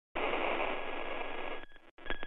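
Radio-style static sound effect: a steady hiss, thin like a radio or phone line, with a faint high whine running through it, dropping away shortly before the end.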